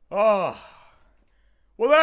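A man's short vocal exclamation at the start, its pitch rising then falling, followed near the end by the start of another brief vocal sound.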